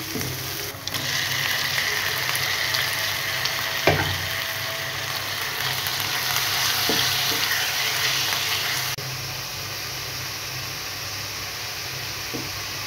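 Minced chicken (keema) frying with onions in hot oil, sizzling steadily, louder from about a second in. Two sharp knocks sound in the pan, about four and seven seconds in.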